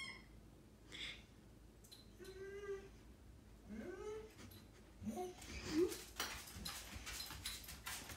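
A dog whining in protest at being made to drop its new toy: several whines, one long and level, then a rising one, then shorter ones. In the last few seconds comes a quick run of clicks from its claws on the vinyl floor.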